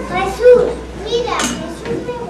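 Young children's high-pitched voices speaking their lines.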